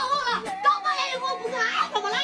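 Speech only: a boy complaining in Chinese, with one syllable drawn out near the end.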